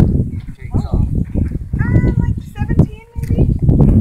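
Indistinct voices of people talking in the background, with low rumbling noise from the handheld microphone.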